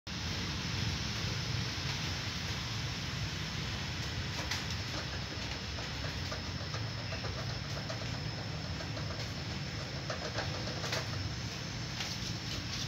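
Steady background hiss and low rumble, with a few faint sharp clicks from a cat eating rice off a metal tray.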